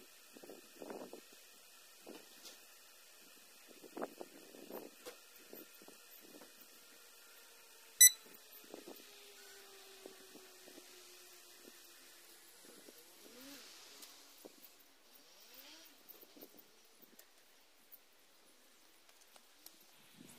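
Quiet, irregular clicks and knocks from the controls being worked inside a parked car, with one sharp, much louder click or beep about eight seconds in. A faint low tone falls slowly in pitch through the middle.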